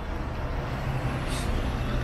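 Steady low rumble of street traffic, with a short hiss about one and a half seconds in.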